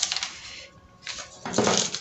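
Brown paper pattern pieces rustling and crinkling as hands slide and press them flat, with a louder rustle about one and a half seconds in.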